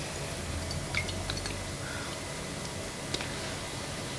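A few faint clicks and taps from a drinking glass of salt water being handled, over low steady room hiss.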